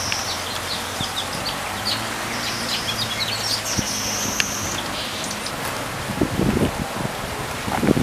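Birds chirping, with short high calls and a few held high notes, over a steady low hum. Rustling in dry leaves and grass comes in near the end.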